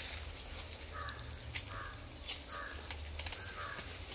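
A series of about five short animal calls, one every half second or so from about a second in, with a few sharp clicks among them over a steady high hiss.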